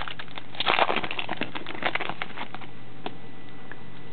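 Foil trading-card pack wrapper crinkling and tearing in the hands: a dense run of crackles over the first couple of seconds, busiest just under a second in, then a few scattered clicks as the cards come out.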